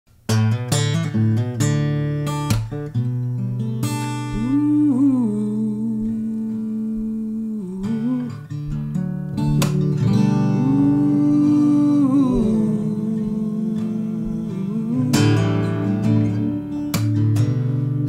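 Slow instrumental song intro on acoustic guitar and piano, with a wordless vocal line sliding up and down over the chords in two long phrases.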